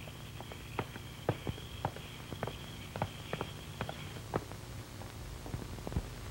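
Footsteps of people hurrying away: short, sharp, irregular steps, about two or three a second, over the old film soundtrack's faint steady hum.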